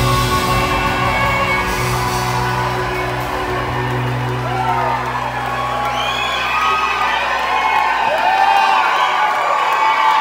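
A live band holds out a final chord that rings on and fades away over the first half, while the audience cheers. Whoops rise and fall over the crowd noise through the second half.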